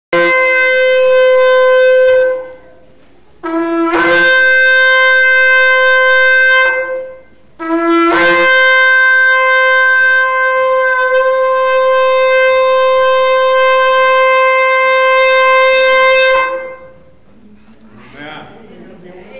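A horn sounding three long, loud blasts, each starting on a short lower note that jumps up to a long held tone; the third blast is the longest.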